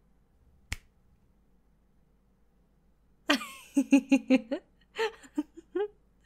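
A single sharp finger snap about a second in, the hypnotic trigger cue. After a quiet stretch, a woman giggles in short bursts from about three seconds in.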